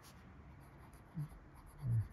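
Fine nib of a Caran d'Ache Dunas fountain pen writing in cursive on grid paper: a faint scratching of the pen strokes. Two short low sounds come about a second in and near the end.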